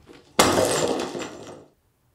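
A glass window pane being smashed: a sudden crash about half a second in, followed by about a second of breaking and scattering glass that then stops.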